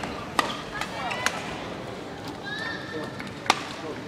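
A badminton racket strikes a shuttlecock once, sharply, about three and a half seconds in, over low arena murmur. A few lighter clicks come in the first second or so before it.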